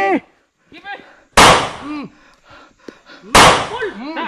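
Two loud gunshot bangs about two seconds apart, the first about a second and a half in and the second near the end, each with a short fading tail.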